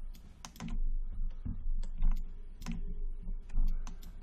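Computer keyboard keys being pressed: irregular single clicks, with a faint steady hum beneath.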